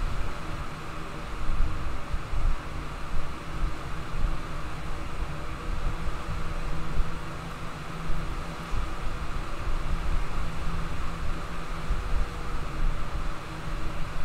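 Steady background noise with no speech: a low rumble under a hiss, with a faint steady hum.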